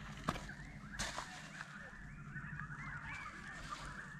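Faint birds calling in the background in a string of short chirps and warbles, with two light clicks in the first second.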